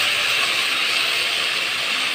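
Okra, onions and green chillies sizzling steadily in hot oil in a pot as they are stir-fried with a wooden spatula: an even hiss.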